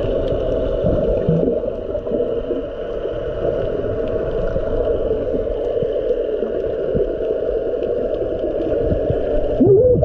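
Dense, steady underwater noise of water moving past the microphone, with a short rising call near the end.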